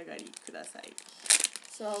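Clear plastic bag around a Japanese egg ice cream crinkling as it is handled, with one loud crinkle just past halfway.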